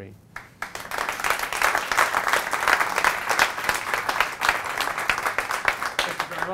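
Audience applauding, many hands clapping at once. It starts about half a second in and swells within a second.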